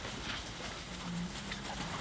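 A herd of African elephants moving through dry bush, with scattered cracks of snapping twigs and shuffling steps. A short low hum comes in about a second in.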